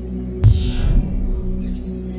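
Logo-animation sound design: a low droning hum, with a deep bass hit about half a second in and a short whoosh right after it.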